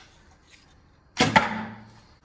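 A recurve bow shot: the string is loosed with a sudden sharp snap about a second in, followed by a brief low ring that fades within about half a second.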